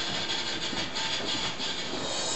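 Steady, dense hiss with a rough, crackly texture from the audio of a VHS tape that was degraded by years of storage in a hot, dusty attic.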